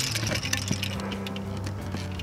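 Twist-on wire nut being screwed down onto the hot wires at an outlet box: a dense run of small crackling clicks of plastic and copper close by, over a steady low hum.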